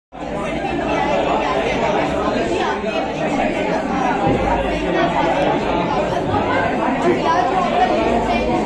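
Many people talking at once in a large hall: a steady babble of overlapping voices.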